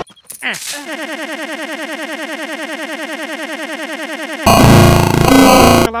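Stutter-loop edit: a split-second fragment of cartoon audio repeated about thirteen times a second as a rapid, even stutter. It then switches to a much louder, harsh, distorted blast of about a second and a half that stops abruptly.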